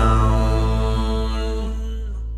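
The last note of a folk song, held by the voice over a guitar chord and fading steadily. Near the end the higher tones stop, leaving the low notes of the chord ringing.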